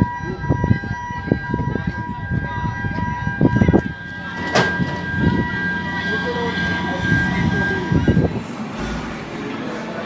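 A steady high-pitched whine of several tones held together, over wind and handling noise on the microphone and background voices. The whine stops about eight seconds in.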